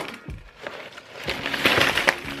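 Rustling of green shredded-paper basket filler, growing louder in the second half as a handful is lifted and tossed into the air, over faint background music.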